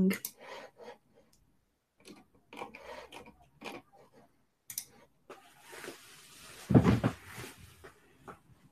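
Quiet handling sounds: fingers rubbing on a small glass-bead beaded bead and its beading thread, with a soft rubbing hiss and a dull low thump about seven seconds in.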